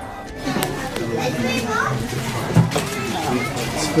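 Background chatter of several voices, children's among them, starting about half a second in.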